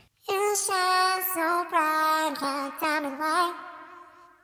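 A sung vocal line played back through the Waves Vocal Bender plugin, pitch-shifted up into a high register. One phrase of a few held, gliding notes fades out near the end.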